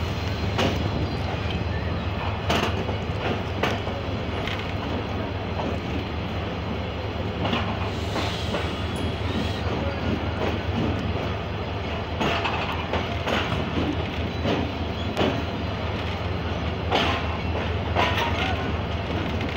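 Passenger coach rolling slowly through a station, heard at its open door: the wheels click irregularly over rail joints, every second or two, over a steady low rumble.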